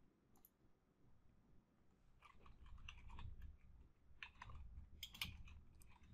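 Faint computer keyboard typing and mouse clicks, in two short runs in the second half.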